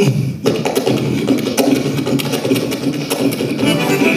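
Diatonic button accordion played solo in a quick rhythmic pattern, with sharp percussive clicks keeping time among the notes.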